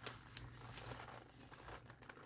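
Faint crinkling of a clear plastic zip-top bag holding rice as it is handled.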